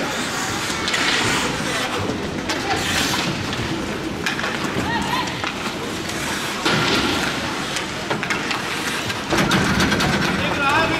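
Ice hockey rink sound during play: voices calling and shouting over the scrape of skates on the ice, with several sharp clacks of sticks and puck.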